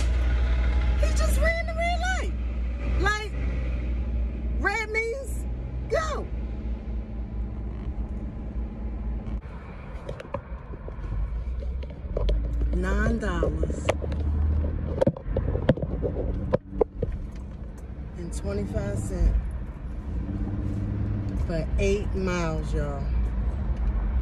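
Steady low road and engine rumble of a car being driven, heard from inside the cabin.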